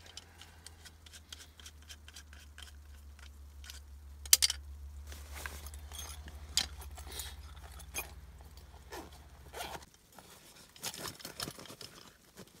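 Clicks, scrapes and rustles of small black plastic camping gear being handled and fitted together, with one sharp click about four seconds in. Underneath runs a steady low hum that stops near the end.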